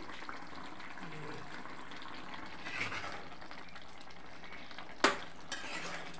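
Small-fish curry simmering in a steel kadai, a steady sizzle, while a spoon stirs it. About five seconds in, the spoon clanks once sharply against the pan.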